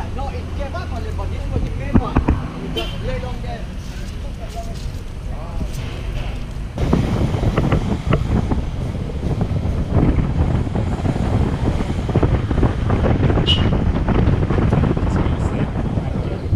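Faint voices at first, then, after an abrupt change about seven seconds in, a steady rush of wind buffeting the microphone over the road noise of a van driving slowly through town streets.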